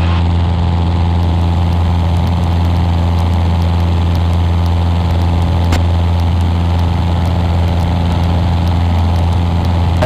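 Cessna 150's Continental O-200 four-cylinder engine and propeller droning steadily in cruise flight, a constant low, even hum with no change in pitch.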